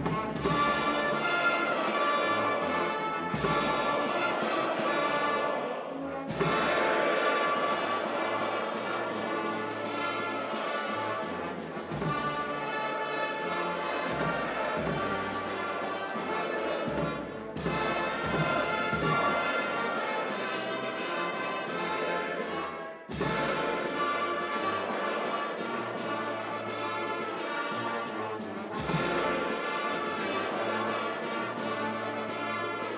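Orchestral music led by brass, with timpani, in long held chords.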